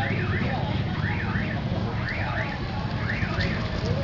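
An electronic alarm repeating a quick double rising-and-falling wail about once a second, over a steady low rumble.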